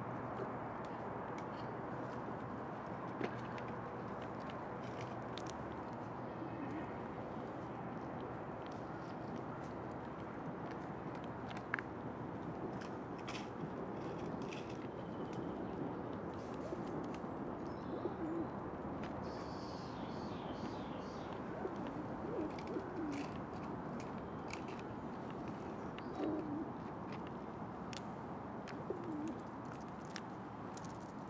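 Feral pigeon cooing repeatedly: low coos that rise and fall, coming every few seconds. Scattered light clicks sound throughout, and a brief bout of high chirping comes about two-thirds of the way in.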